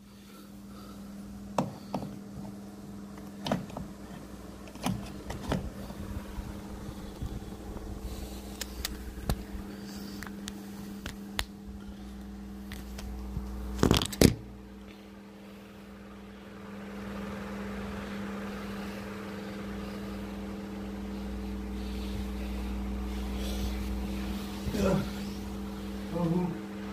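A steady low machine hum with scattered knocks and bumps from the phone being handled, with a louder double knock about fourteen seconds in and a deeper rumble rising after that.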